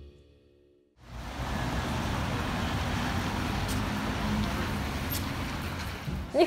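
Steady, even background noise of a room, starting abruptly about a second in after the end of a music fade and a moment of silence.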